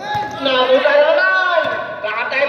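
A man's voice, loud and drawn out, words not made out.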